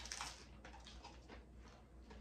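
Faint, scattered crunching of hard corn taco shells being bitten and chewed.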